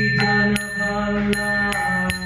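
A man chanting in a slow melody over a steady low drone. Small hand cymbals are struck about two to three times a second, each stroke ringing on.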